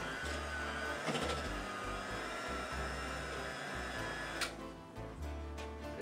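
Electric hand mixer running steadily, its beaters whipping mashed potatoes in a glass bowl, then stopping abruptly with a click about four and a half seconds in.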